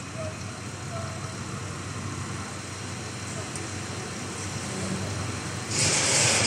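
Steady low running noise of a tractor's diesel engine idling. A loud hiss starts near the end.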